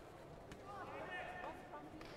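Indistinct voices of people talking in a large sports hall, with a faint knock about half a second in.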